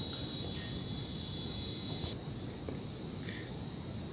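A steady, high-pitched chorus of insects buzzing that cuts off suddenly about two seconds in, leaving a fainter insect hum.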